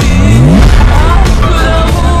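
Transition effect in a music mashup: the beat thins out and several rising pitch sweeps play in the first second. The full music comes back in at the end.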